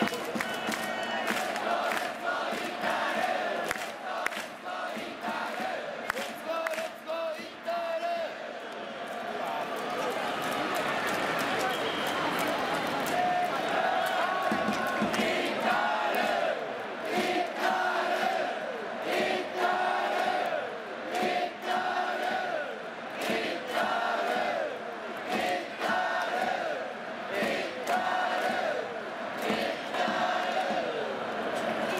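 Japanese baseball cheering section chanting a batter's cheer song in unison to a trumpet-led melody, with sharp rhythmic clapping. The chant grows more organised and steady about midway.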